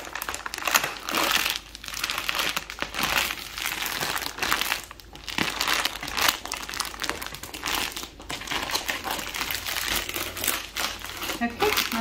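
Clear plastic roll-up compression bag crinkling and crackling as it is pressed and rolled over the sweaters inside, forcing the air out through its one-way valve.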